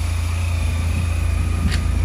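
Honda Silver Wing 400 maxi-scooter's single-cylinder engine idling steadily, with a faint click near the end.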